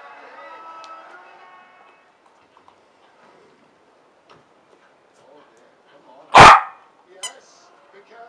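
A Parson Russell Terrier barks once, loud and sharp, about six seconds in, then gives a shorter, quieter bark about a second later.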